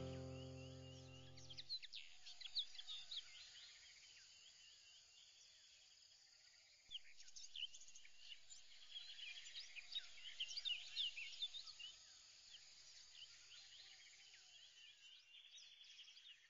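Music fades out in the first two seconds, followed by faint, dense chirping of small birds, with many short high chirps that pick up again about seven seconds in.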